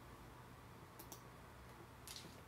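Near silence, with one computer mouse click about a second in, its press and release heard as two faint clicks close together.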